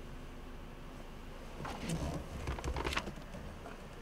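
Faint, steady low hum of a 2013 Toyota RAV4's engine idling, heard inside the cabin, with soft rustling and handling noise about two to three seconds in.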